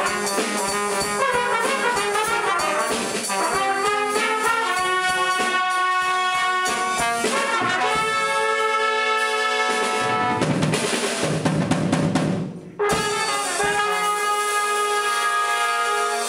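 Trumpet ensemble playing in harmony, several trumpets sounding held chords and moving lines together. The sound drops out briefly about three-quarters of the way through, then the ensemble comes back in.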